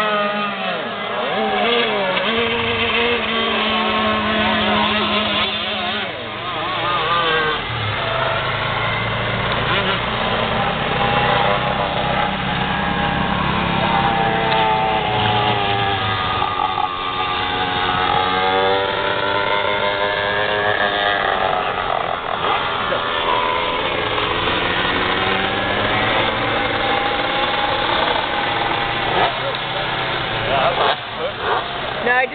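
Several 125cc two-stroke shifter cage kart engines running hard and overlapping, their pitch rising and falling continually as they rev up and back off through the turns.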